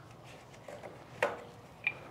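Two light, sharp clicks, the second with a brief ring, from handling the top supply shaft of a cold roll laminator as it is taken out.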